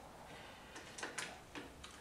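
A few faint, short clicks and light taps as the coping fixture's angle setting is adjusted by hand.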